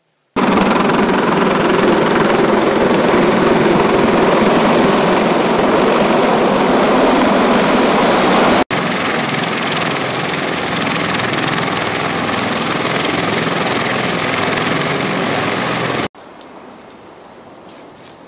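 Close-range noise of a Marine CH-53 heavy-lift helicopter running on the ground, its rotor and turbines making a loud, even roar. The sound jumps at a cut about halfway through and stops suddenly near the end, giving way to quiet outdoor sound with a few small clicks.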